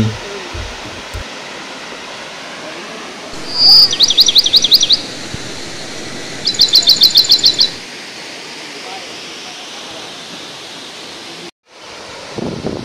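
Steady rush of a waterfall, with a bird singing two loud bursts of rapid, repeated high notes, about four seconds in and again about seven seconds in. The sound drops out briefly near the end.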